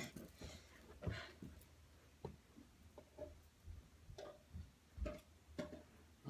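Faint, irregular light ticks and a few soft thumps: footsteps and small knocks from a person walking across a carpeted room.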